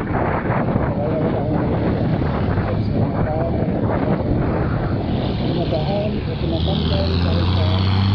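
Motorcycle on the move, with its engine and wind rushing over the helmet camera's microphone. From about six and a half seconds in, a loud steady low hum from a bus's engine comes in as the motorcycle pulls alongside the bus.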